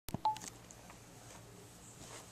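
A click and one brief electronic beep right at the start, then faint steady room hum.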